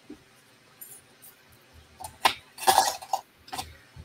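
Small craft supplies being handled on a work table: a faint click about a second in, then a louder cluster of short, sharp clicks and rattles between two and three seconds.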